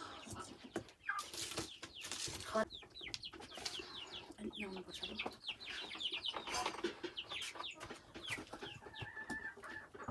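Chickens clucking, with rapid runs of short, falling high-pitched chirps through the middle and a few light knocks early on.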